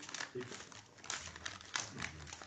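Faint, irregular rustling and crackling, a scatter of small crinkly noises.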